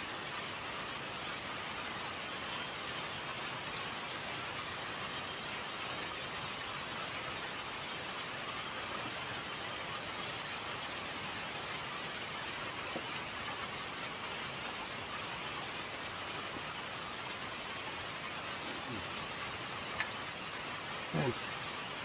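Steady rain falling, an even sound that holds without a break, with a faint voice briefly near the end.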